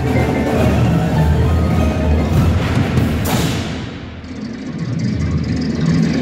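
Indoor percussion ensemble playing its show: marimbas and other mallet percussion with drums and an amplified electronic backing. There is a cymbal-like crash about three seconds in, and the music dips briefly, then builds again.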